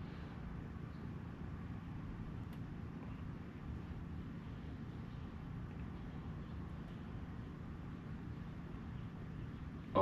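Quiet, steady outdoor background noise: a low rumble with a faint hiss above it, unchanging, with no distinct events.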